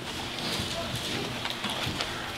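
Thin Bible pages being flipped: a continuous papery rustle with many quick flicks, as a congregation leafs through to the same passage.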